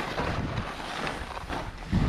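Skis swishing through deep powder snow on a steep descent, with wind rushing over the camera's microphone.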